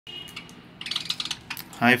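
Budgies' beaks pecking at food in a plastic dish: a quick run of light clicks about a second in, after a faint high chirp at the start. A voice says "hi" at the very end.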